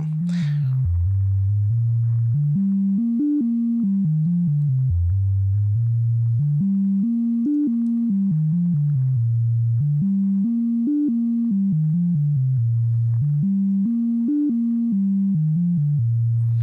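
A modular synthesizer voice played by the USTA step sequencer: a low, continuous tone stepping from note to note in Mixolydian, looping a pattern every few seconds. The notes run into each other with no gaps, as no envelopes are yet shaping them.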